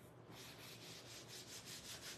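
Textured sponge applicator rubbed quickly back and forth over a leather chair seat, working in a wax leather conditioner: faint, rapid swishing strokes, several a second.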